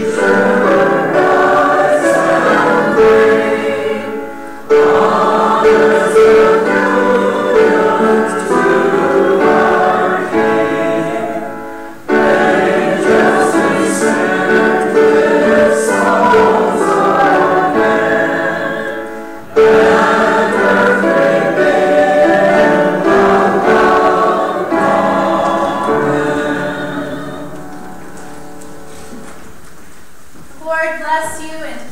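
A church choir and congregation singing a hymn together in several long phrases, the last one dying away near the end.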